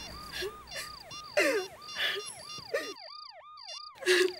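Electronic yelp siren sweeping up and down about three times a second, with short high beeps and clicks from mobile-phone keys being pressed over it. About three seconds in the low background falls away and the siren and beeps carry on alone.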